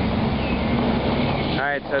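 Heavy steel sliding door rolling along its steel guide track on iron wheels: a steady rumble with a low hum that stops about one and a half seconds in.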